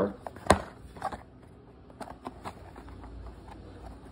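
Small cardboard toy box being handled: a sharp tap about half a second in, then a few light clicks and scrapes of cardboard.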